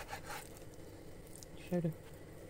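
Kitchen knife slicing through a slab of raw pork fat on a wooden cutting board, a short scraping cut right at the start and a fainter one later. A brief bit of a woman's voice comes near the end.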